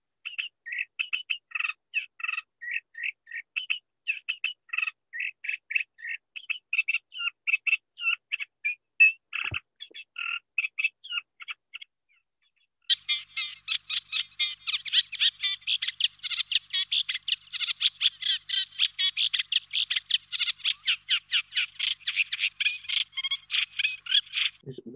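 Reed warbler song from a recording: a long, chattering run of short repeated notes. It breaks off about halfway through for a second, then resumes faster, denser and higher.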